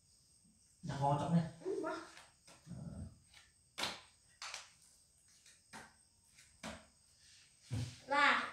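Short wordless voice sounds from people close by, then about five short, sharp taps spread across the second half, roughly a second apart.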